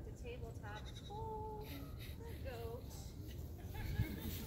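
A young goat bleating, with one drawn-out call about a second in, amid people's voices.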